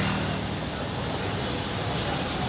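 Busy street ambience, mostly a steady traffic noise of passing and idling vehicles.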